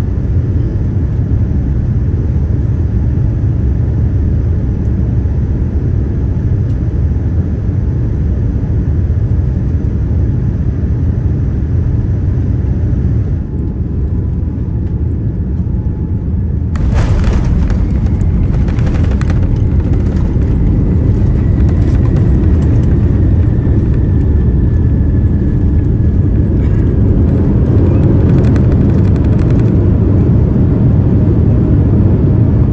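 Jet airliner landing, heard from inside the cabin: a steady engine and airflow rumble, then about 17 seconds in the wheels touch down with a sudden jolt. The rollout on the runway follows, a louder rattling roar with the spoilers raised. The roar grows near the end, and a faint falling whine runs through the middle of the rollout.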